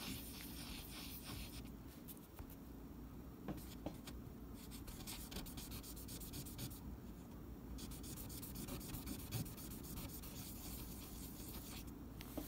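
A small metal screw rubbed back and forth by hand on fine abrasive paper to smooth the edges of its threads: a faint, quick scratchy rubbing that pauses briefly about two seconds in and again about seven seconds in.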